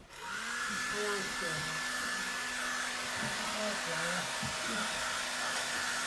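Hair dryer switched on and blowing steadily, a rush of air with a constant high whine, drying wet watercolour paint.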